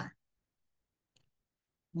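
Near silence in a pause between a man's sentences, with one faint click about halfway through.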